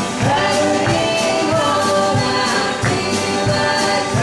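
Live old-time gospel hymn: a man and a woman singing over acoustic guitar, with a steady beat.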